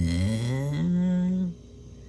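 A teenage boy's long, drawn-out wordless vocal sound of hesitation, starting low, rising in pitch and then held, stopping about one and a half seconds in.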